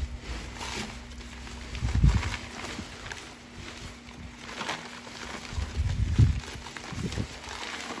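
Crumpled newspaper wrapping rustling and crinkling as it is pulled apart by hand to unwrap a piece of china, with a dull thump about two seconds in and another around six seconds.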